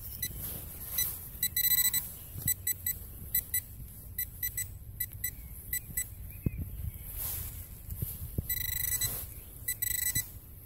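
Handheld metal-detecting pinpointer beeping as its probe is worked through loose soil in the dig hole, signalling a metal target. The short high beeps come singly and in quick runs, faster as the probe nears the target. Soft scraping of soil and gloved hands sits beneath.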